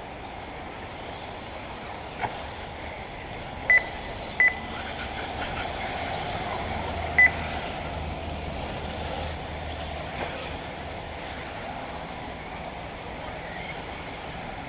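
Three short, high electronic beeps, the first two about a second apart and the third some three seconds later, over a steady background hiss. At an RC buggy race, beeps like these are typical of the lap-timing system registering cars as they cross the line.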